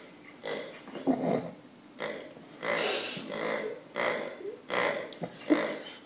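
German Shepherd puppy chewing and squeezing a pink rubber pig toy, with a run of short raspy noises coming about once a second and a longer one in the middle.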